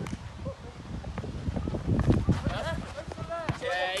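Players' voices calling out on an outdoor pitch, with a low rumble and scattered short thuds during play.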